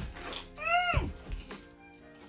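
A single voiced "Mm" whose pitch rises and then falls, over background music.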